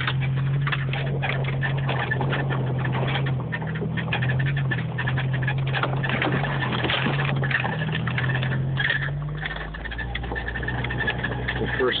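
A 1995 Jeep Wrangler YJ's engine drones steadily while driving a snowy trail, heard from inside the cab, with frequent clicks and rattles over the bumps. About ten seconds in, the engine note drops lower and quieter.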